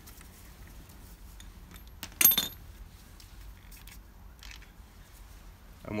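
Socket ratchet and steel rear-axle wheel nut, metal on metal, as the loosened 22 mm nut is run off the axle: a few faint ticks, then one sharp metallic clink with a short ring a little over two seconds in.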